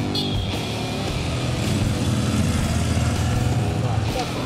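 A motorcycle engine running steadily under guitar background music.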